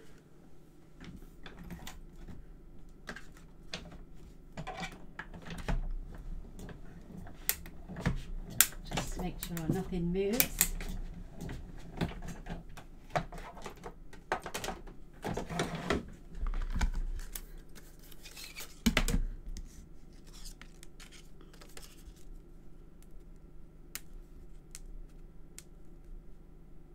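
A die-cutting machine running a plate sandwich through to cut paper flower and leaf shapes, with irregular clicks and knocks from the acrylic plates being handled. The sounds are busiest in the middle and thin out near the end.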